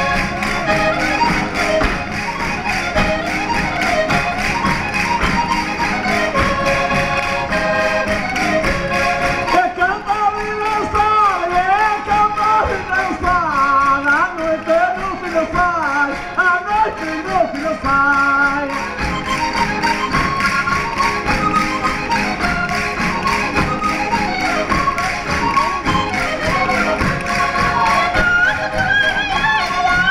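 Portuguese folk band playing a chula batida, with accordions carrying the tune and a steady beat, while dancers' feet tap and stamp on the wooden stage. A higher melody with wavering pitch stands out from about ten seconds in until about eighteen seconds.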